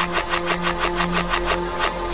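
Instrumental electronic pop track played in reverse: fast, evenly spaced ticking percussion, about eight hits a second, over sustained synth tones.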